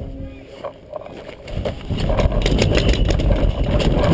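Voices, then from about two seconds in a loud low rumbling noise with scattered sharp clicks.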